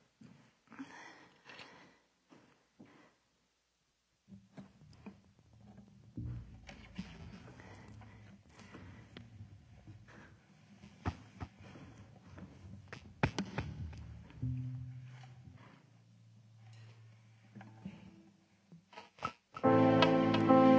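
A band setting up on a stage: scattered knocks and clicks of instruments and gear being handled, quiet plucked guitar notes and a held low note through the sound system. Just before the end the full band starts playing loudly.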